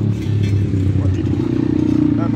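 Battery-powered electric hydraulic pump unit of a screw-flight forming press running, a steady low hum whose tone shifts slightly about halfway through as the press ram moves.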